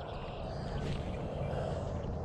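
Steady low rumble of outdoor background noise with no distinct sounds standing out.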